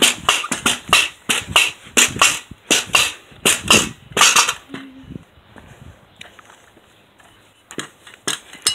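A quick run of sharp knocks or thuds, about two to three a second, for the first four and a half seconds, then only a few faint clicks.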